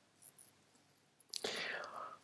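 Near silence, then about two-thirds of the way in a short, faint intake of breath by the narrator, just before speaking.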